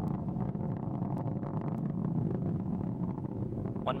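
Steady low rumble of a Delta IV rocket's main engine and solid rocket motors in powered flight, heard from far off.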